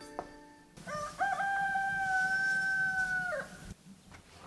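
A rooster crowing once: a couple of short rising notes, then one long held note that falls away at the end.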